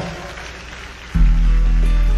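Radio broadcast: a quiet music bed under the last syllable of a DJ's talk. About a second in, a song starts with a loud, sustained low note.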